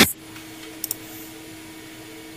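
A low, steady hum with a quick double click, like a computer mouse button, about a second in.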